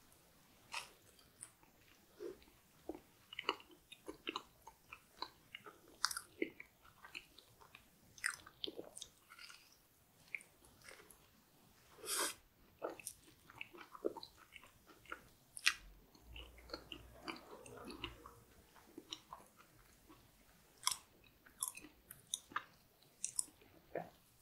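Close-miked chewing and wet mouth sounds of a person eating a soft chocolate-coated, cream-filled pastry: irregular small clicks and smacks, with a brief low rumble about two-thirds of the way through.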